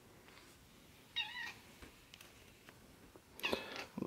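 A cat gives one short, high-pitched meow about a second in.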